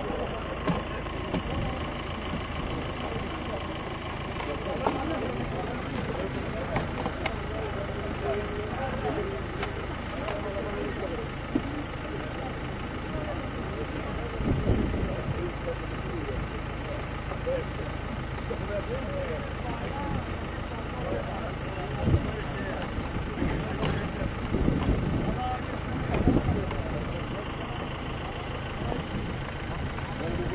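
Ambulance engine idling steadily close by, with scattered crowd voices over it and a few sharp knocks.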